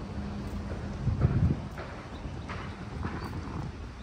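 Footsteps in sandals on paving and wooden decking, a light slap about every half second, the loudest about a second in, over low wind rumble on the microphone and a faint steady hum.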